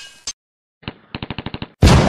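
Sound effects for an animated outro graphic: a fading hit and a click, then a fast run of sharp clicks, about ten in half a second, ending in a loud hit near the end.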